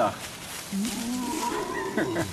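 A deep, drawn-out growling voice with a wavering pitch, opening with a breathy rush.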